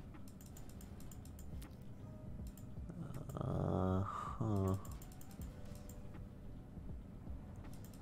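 Computer keyboard keys clicking in quick, irregular presses, used to spin an online slot. About three seconds in, a louder low pitched sound comes twice in a row.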